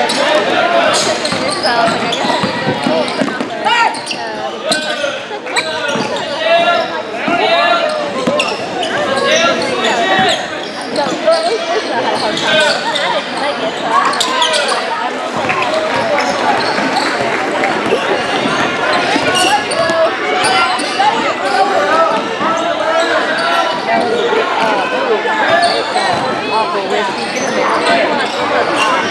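Basketball bouncing on a hardwood gym floor during play, with indistinct shouting voices of players and spectators echoing in the gym.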